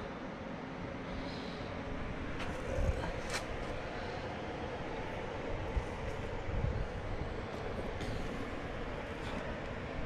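Steady outdoor background noise with a faint steady hum and a few low bumps.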